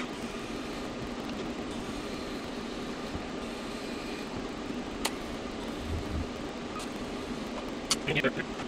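TIG welding arc on steel, a steady hiss, with a faint click or two. The weld joins homemade spline pieces that lock a Subaru 5-speed transmission's output to its front pinion shaft.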